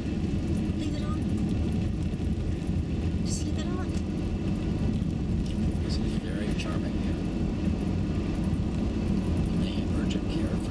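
Steady low rumble of a car's engine and tyres heard from inside the cabin while driving.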